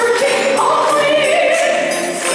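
Live symphonic metal song: a woman singing held notes in an operatic style into a microphone, with choir-like backing voices over the band.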